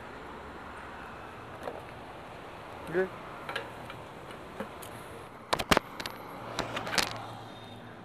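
Motorcycle ridden slowly, its engine a faint steady low hum, with a few sharp clicks and knocks between about five and a half and seven seconds in.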